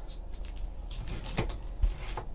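Quiet handling of a hard plastic graded-card case on a table, with a faint click about one and a half seconds in and a soft thump just before the end.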